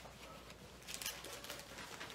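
Faint rustle of thin Bible pages being turned while a passage is looked up, with a few brief crinkles about a second in.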